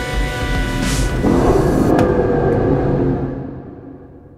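Background music with steady held tones over a low rumble, swelling about a second in and fading out over the last second.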